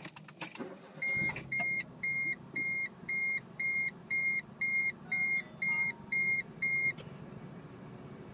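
A car engine starts about a second in and settles into a steady idle. Over it, an electronic chime beeps twelve times, about three beeps a second, each beep short and high-pitched, then stops about a second before the end.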